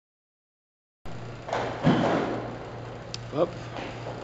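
Olympic barbell loaded to 110 kg being cleaned: after a second of silence, a loud rush of noise about a second long as the bar is pulled and caught, over a steady low hum.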